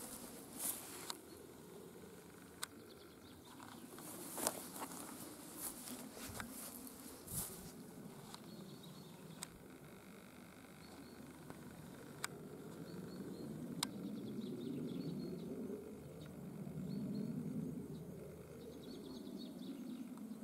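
Faint rustling through long grass and dry bracken while walking, with scattered sharp clicks and soft high chirps in the background. A low swelling rumble rises and falls a few seconds before the end.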